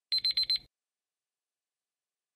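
Digital countdown-timer alarm beeping four times in quick succession, a high-pitched electronic beep signalling that the time is up.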